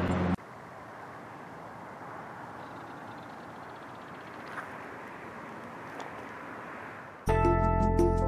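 Faint, steady outdoor ambient noise with a couple of light clicks, then background music with sustained notes starting suddenly about seven seconds in.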